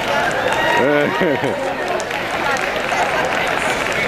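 Excited crowd of students chattering and shouting in a large arena, with one voice calling out over the babble about a second in.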